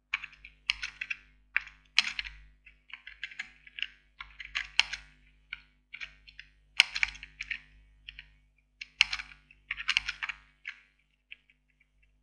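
Typing on a computer keyboard: irregular runs of keystrokes with short pauses between them, thinning out near the end.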